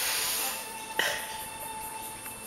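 A child blowing a short breathy puff through a soap-bubble wand, followed by a sharp click about a second in, over a faint steady high tone.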